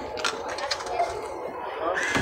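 A few light clicks and handling sounds at a self-checkout machine's cash slot as a dollar bill is fed in, under faint voices.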